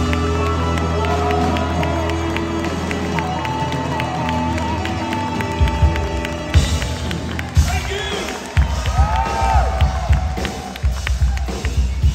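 Live rhythm-and-blues band with drums and a saxophone-and-trumpet horn section holding a long chord, then hitting a run of sharp accents, with a crowd cheering.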